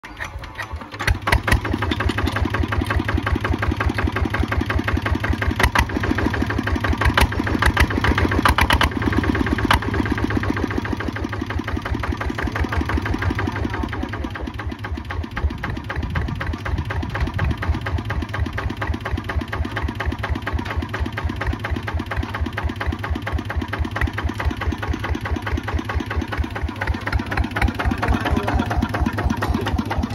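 Kubota ZT155 single-cylinder diesel on a two-wheel walk-behind tractor, hand-cranked and catching about a second in, then running steadily with an even, rapid chug.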